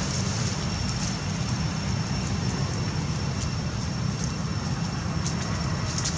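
Steady low rumbling background noise with a thin, constant high-pitched tone over it and a few faint clicks.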